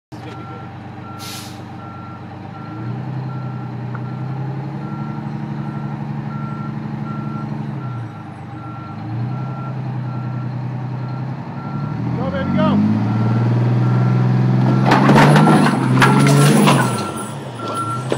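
Fire rescue truck backing up with its reverse alarm beeping steadily about twice a second, its engine revving up and easing off in steps as the wheels climb over 5-inch fire hose. A burst of clatter and crackle comes near the end as the tyre rolls over the hose.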